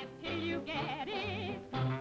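A song on an old cartoon soundtrack: a voice singing in a warbling, yodel-like style with wide vibrato over band accompaniment with a regular bass beat.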